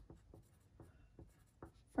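Wooden pencil writing on a paper sticky note: a run of faint, short, irregular scratching strokes.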